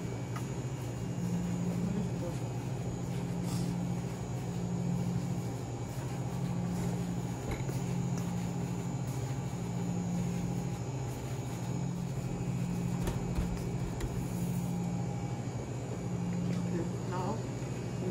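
Steady low hum of commercial kitchen machinery, with a slow, regular throb.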